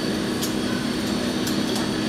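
ICE 3 high-speed train standing at the platform, its onboard equipment giving off a steady hum with faint high tones. A few faint clicks come through.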